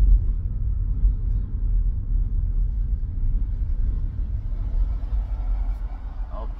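Steady low rumble of a moving car heard from inside its cabin, easing off a little near the end.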